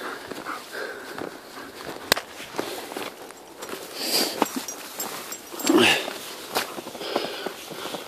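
Crunching and rustling of movement over snow, with scattered sharp clicks and a brief louder burst about six seconds in.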